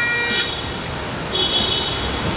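Bagpipes playing, cut off about half a second in, then a steady noisy background with a brief high toot near the end.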